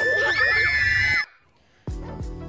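Shrill, high screaming over a held piercing tone, cutting off suddenly after about a second. A brief hush follows, then music starts near the end.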